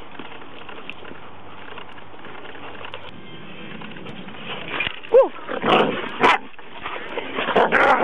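Dogs vocalizing during rough wrestling play between a Newfoundland and huskies: after a few quieter seconds, a short falling yelp about five seconds in, then a run of loud, rough growls and barks.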